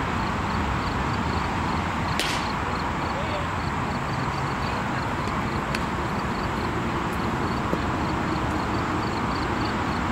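A single sharp smack about two seconds in as a pitched baseball arrives at home plate, with a smaller click a few seconds later, over steady outdoor background noise.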